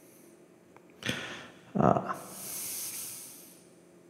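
A person's breath noises close to the microphone: a sharp noisy breath about a second in, a short throaty sound just before two seconds, then a long hissing breath that fades out.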